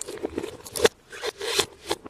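Clear plastic film crinkling and crackling as hands peel it off a large plastic surprise egg, with a few sharp snaps.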